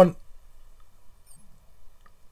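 A man's spoken word trails off, followed by a quiet pause of room tone with a couple of faint, brief high-pitched chirps in the middle.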